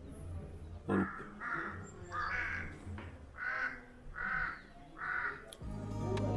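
A crow cawing repeatedly: a run of short, separate caws spaced under a second apart. Steady background music comes in just before the end.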